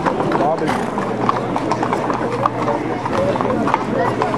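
Hooves of several Camargue horses clip-clopping on the street in an irregular patter, over the chatter of a crowd of many voices.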